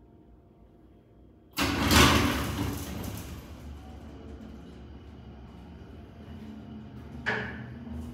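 Heavy freight elevator doors shutting with a sudden loud clatter about a second and a half in, fading over the next second or so. A steady low running rumble follows as the hydraulic elevator car travels.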